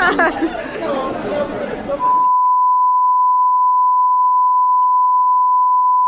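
Chatter and laughter, then about two seconds in a single steady high-pitched test-tone beep of the kind played with TV colour bars starts abruptly and holds unchanged.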